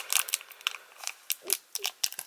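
Foil trading-card booster pack wrapper crinkling and crackling in the hands as its back seam is pulled open, a run of irregular sharp crackles.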